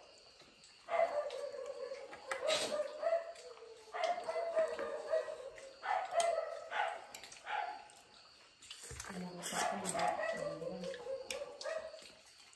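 A dog whining off-camera: a series of high-pitched whines, each held for a second or two, with short pauses between them.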